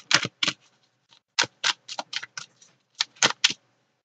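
Irregular bursts of short, sharp clicks and taps, several a second, grouped in clusters with brief pauses between.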